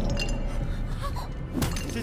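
A large egg smashed: one sharp shattering crack about one and a half seconds in, over background film music.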